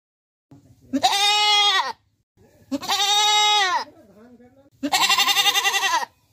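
A goat bleating three times, each call about a second long, the last one wavering.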